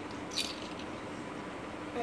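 A baby's plastic toy rattle shaken once briefly, about half a second in, giving a short high jingling rattle over a steady low background hum.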